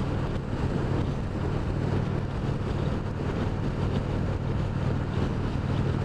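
Indian Springfield Dark Horse's 111 cubic-inch (1,811 cc) Thunder Stroke V-twin running steadily at highway cruising speed, mixed with wind rushing over a helmet-mounted microphone.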